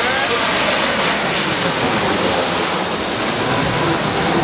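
Southwest Airlines Boeing 737 passing low overhead, its jet engines giving a steady, loud rush of noise.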